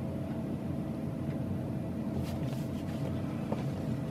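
Steady low background hum in the room, with faint rustling and a soft tap about three and a half seconds in as books are handled at the desk.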